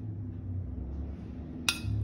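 A metal spoon clinks once against a dish near the end while chutney is spooned out, the strike ringing briefly, over a low rumble.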